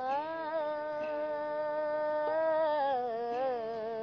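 A woman's singing voice holds one long, wavering note, sliding down in pitch about three seconds in, over a steady held drone tone, with no percussion.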